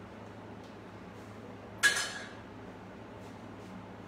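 A single sharp clink of crockery, a cup or mug struck by a hard object, about two seconds in, ringing briefly with a clear tone, over a low steady hum.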